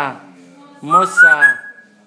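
An African grey parrot whistling: a short rising whistle about a second in that levels off and stops shortly before the end, over a brief voice-like call.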